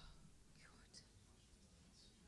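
Near silence, with faint whispered voices: a few soft hissing syllables at the start, about a second in and near the end.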